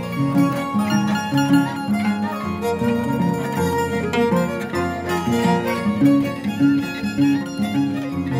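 Andean harp and violin playing a tune together, the harp plucking a repeating pattern of low bass notes under the violin's melody.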